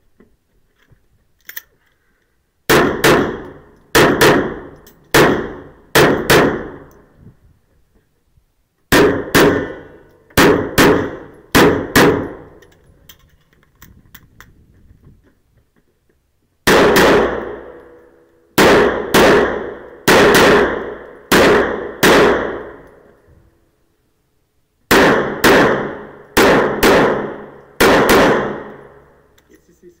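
Pistol shots fired in quick pairs, about thirty in all, in four strings separated by short pauses, each shot echoing in an indoor range.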